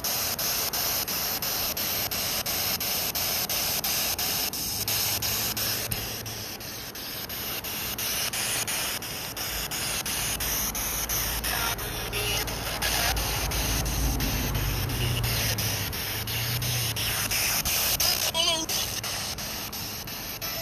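Steady hiss of noise spread evenly from low to high pitches, with a low rumble swelling in the middle stretch and fading again.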